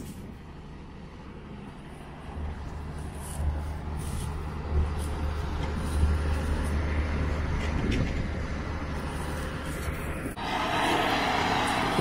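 Diesel engine of a tracked drainage tile plow running with a low, steady rumble that grows louder a couple of seconds in. A broad hiss joins it near the end.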